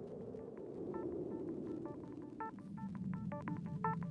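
Electronic intro music: a low synth drone, joined from about a second in by short, high electronic bleeps in a rhythm that grows busier.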